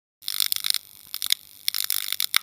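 Sound effect of a neon sign flickering on: uneven clusters of sharp, high-pitched electric crackles and clicks.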